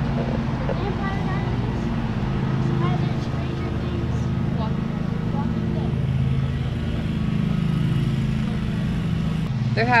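Road traffic at an intersection: a steady low hum of car and truck engines, with faint talking over it.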